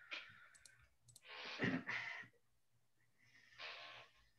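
Faint, garbled bursts of breathy noise and clicks from a participant's microphone on a video call. There are three short bursts, the loudest about a second and a half in. The participant's audio connection is not coming through properly.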